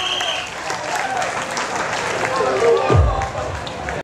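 Audience clapping and cheering, with voices calling out, as the dance music cuts off about half a second in; a low thump about three seconds in is the loudest moment.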